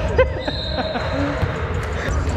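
Indoor volleyball gym ambience: balls thudding irregularly on the hardwood floor and voices echoing around the hall, with a thin high tone held for about a second in the middle.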